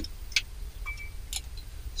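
Two light clicks about a second apart over a low steady rumble, with a short thin tone between them.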